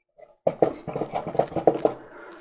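A coiled plastic USB charging cable being handled and unwound in the hands: a quick, irregular run of light clicks and rustles, starting about half a second in.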